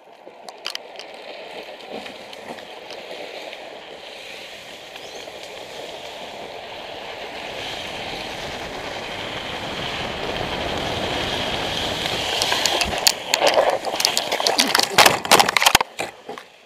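Wind rushing over the camera and the drift trike's wheels rolling on wet asphalt, getting steadily louder as the trike picks up speed downhill. In the last few seconds comes a fast run of sharp knocks and clatter.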